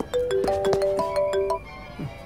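A phone ringtone: a short tune of struck, ringing notes that stops about a second and a half in.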